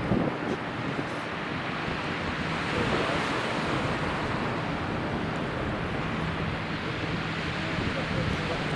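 A steady wash of distant outdoor city ambience heard from high above, with wind buffeting the microphone.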